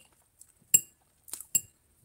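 Metal fork clinking against a plate as it cuts through a piece of cornmeal pudding: a few short, sharp clinks, the loudest a little under a second in.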